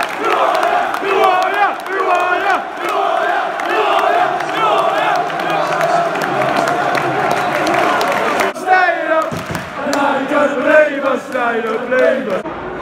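Football crowd in the stands chanting and cheering, many voices singing together in celebration of a goal, with a brief break about nine seconds in.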